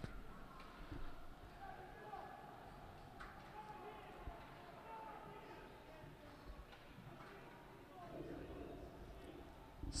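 Faint ice-rink sound of a youth hockey game in play: distant players' voices and a few light clicks of sticks and puck on the ice.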